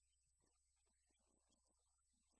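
Near silence, with only a faint steady hum.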